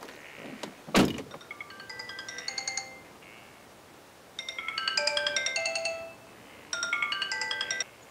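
Mobile phone ringing with a melodic ringtone: three phrases of bright chiming notes, the middle one loudest. A single sharp thunk sounds about a second in.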